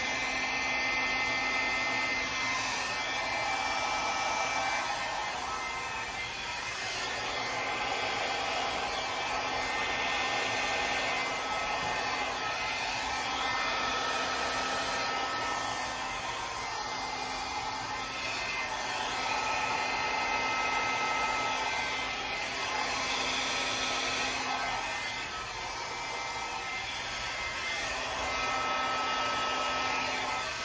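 Handheld blow dryer running continuously, blowing air over wet acrylic paint to push it across the canvas. It holds a steady low hum under the rush of air, and its level swells and dips slightly as it is moved about.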